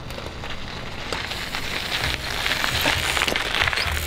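Mountain bike tyres rolling and crunching over gravel, a crackly hiss with small ticks that grows steadily louder as the bike comes in.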